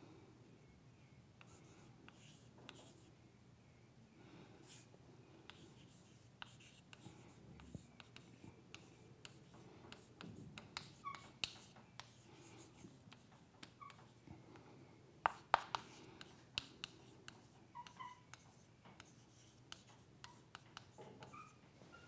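Chalk writing on a blackboard: faint, irregular taps and short scrapes of the chalk against the board, a little louder about fifteen seconds in.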